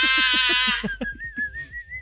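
People laughing hard: a shrill, squealing laugh over rapid short 'ha-ha' pulses in the first second, thinning out into one high, wavering, whistle-like tone that rises slightly at the end.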